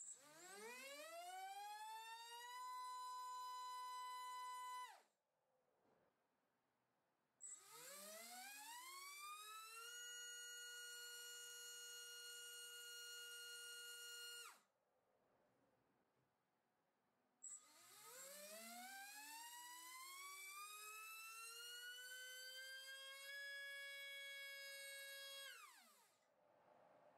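MAD Racer 2306-2400KV brushless motor spinning a three-blade 5-inch prop on a thrust stand, run up to full throttle three times. Each run opens with a short high chirp, then a whine rises in pitch over a few seconds and holds steady at full speed. Each run ends with a quick fall in pitch as the motor is cut. The third run, on 5S, climbs more slowly to a slightly higher steady pitch.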